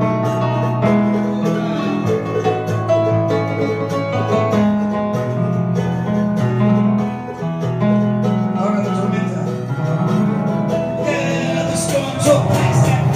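Instrumental passage of a country-folk song: a Roland RD-150 digital stage piano playing chords and a moving bass line with a strummed acoustic string instrument.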